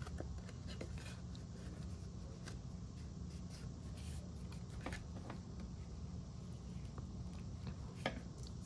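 Soft, scattered rustles and light taps of cardstock and patterned paper being handled and lined up by hand, over a steady low hum.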